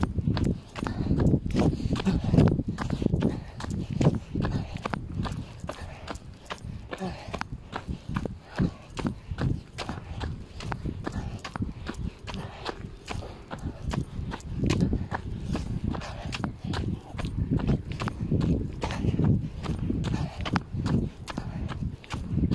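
Handling noise on a phone microphone pressed against a shirt as the wearer moves: cloth rubbing and a dense run of small knocks, with louder low muffled thuds here and there.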